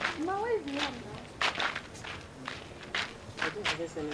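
Footsteps on bare dirt ground at a walking pace, about two steps a second, with a short vocal sound just after the start.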